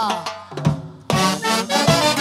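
An Andean orquesta típica of harp, violin, clarinet and saxophones is playing a huaylarsh. The winds end a phrase with a falling glide, and a short break follows with a couple of drum beats. The full band comes back in about a second in.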